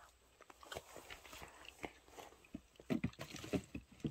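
Close-miked chewing: a run of small wet clicks and crunches, getting louder and busier near the end.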